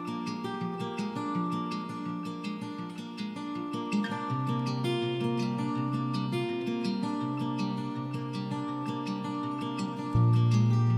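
Background music: an acoustic guitar piece with quick plucked notes over a steady beat.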